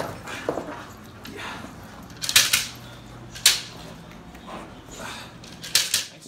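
A Belgian Malinois gripping and tugging on a trainer's padded bite suit: rustling and scuffling of the suit and paws on rubber matting, with three loud, sharp bursts of noise at uneven intervals.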